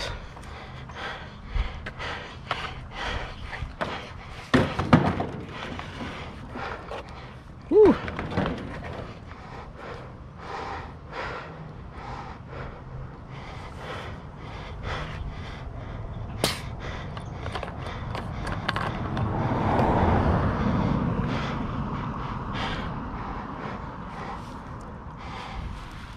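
Irregular knocks, clanks and thumps of handheld lawn equipment being moved around on a landscape trailer. A softer rushing noise swells up and fades away about three-quarters of the way through.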